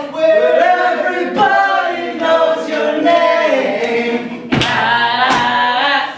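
Several voices singing together a cappella in long held notes, with no instruments. A sharp snap cuts in about four and a half seconds in.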